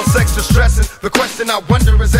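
Hip-hop music: a rapped vocal over a beat of deep bass and drum hits.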